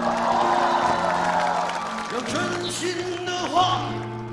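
Live pop-rock band playing on acoustic and electric guitars with drums, a passage between sung lines.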